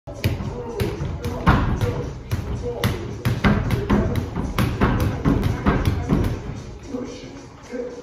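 Boxing-gloved punches landing on a freestanding body-opponent punching dummy: a run of thumps about two a second, stopping about six and a half seconds in.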